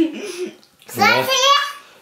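Young child's voice, wordless. A held tone at the start, then about a second in a short, high-pitched cry whose pitch wavers up and down.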